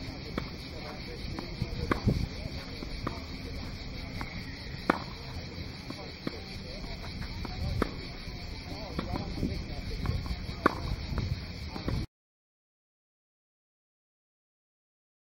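Tennis rally on a clay court: sharp racket-on-ball hits roughly every three seconds, with fainter hits from the far end between them, over a steady high insect buzz. The sound cuts off abruptly about two seconds before the end.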